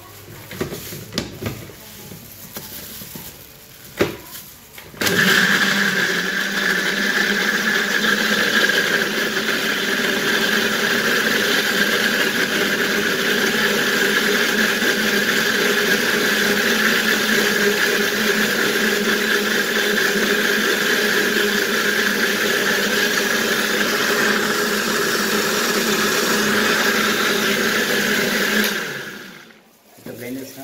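Electric countertop blender switched on about five seconds in and running steadily for over twenty seconds, pureeing boiled orange peel with olive oil into a dressing, then switched off and winding down near the end. Before it starts, a few knocks and clicks as the lid and jug are handled.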